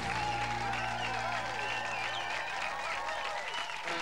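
Studio audience applauding and cheering over a held low chord that fades out about halfway through, just before a band begins.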